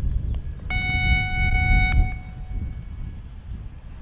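A steady, high electronic signal tone sounds for just over a second and cuts off abruptly, starting a little under a second in.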